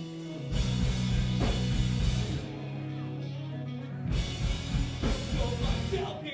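Pop punk band playing live: electric guitars, bass and drum kit. The full band comes in loud about half a second in, drops back briefly around four seconds in, then picks up again.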